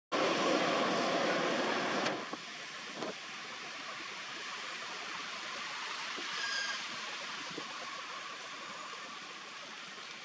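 Steady outdoor background hiss, louder for the first two seconds and then even. A few faint clicks and a brief high-pitched call come near the middle.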